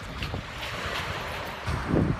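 Wind blowing across the phone's microphone on an open beach: a steady rushing hiss over uneven low rumbling.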